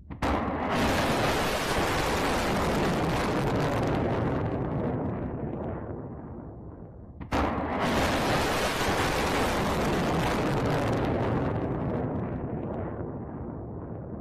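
Two surface-to-air missile launches. Each starts with a sudden blast as the rocket motor ignites, then a loud rushing rocket noise fades over several seconds as the missile climbs away. The second launch comes about seven seconds in.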